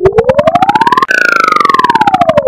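Electronically processed logo-jingle sound: one pitched tone that rises steadily, jumps higher about a second in and then glides back down, chopped into rapid pulses about ten a second, siren-like.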